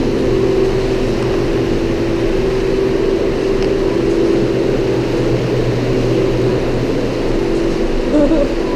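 Steady mechanical hum of a walk-in flower cooler's refrigeration unit running, a low drone with a constant pitch.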